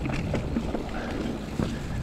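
Mountain bike riding fast over a leaf-covered dirt trail: wind buffeting the camera's microphone and tyre rumble, with light rattles and clicks from the bike's frame and drivetrain.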